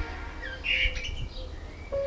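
A Eurasian blackbird gives one short chirp call about half a second in, over a low background rumble. Soft music comes back in near the end.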